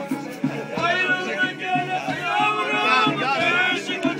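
Turkish folk dance music: a kemane, a small bowed folk fiddle, plays a wavering, sliding melody over the steady beat of a davul, a large double-headed bass drum.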